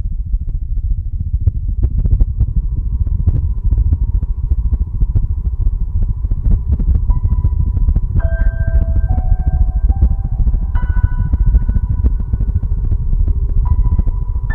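Film soundtrack music: a loud, low rumbling drone under the whole stretch, with a slow melody of held notes entering about seven seconds in and stepping to a new pitch roughly every second.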